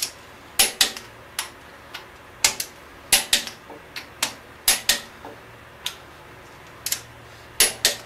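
Click-type torque wrench clicking off on big-block Chevy cylinder head bolts set to the final 80 lb: each click signals that a bolt is already at torque. About a dozen sharp metallic clicks come at uneven intervals, many in quick pairs, mixed with the clink of the socket going onto the bolts.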